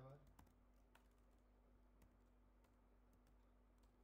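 Near silence with a few faint, isolated computer-keyboard clicks, spaced about a second apart, over a steady low hum.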